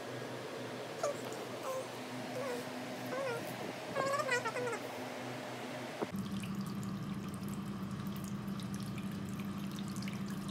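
Several short, wavering high-pitched calls over a low background hum, the longest run of them about four seconds in. After a sudden change about six seconds in, water runs steadily from a tap into a sink.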